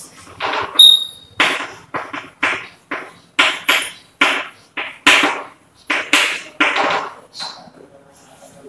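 Chalk writing on a chalkboard: a quick run of short scratchy strokes, about two a second, with a brief high squeak from the chalk about a second in.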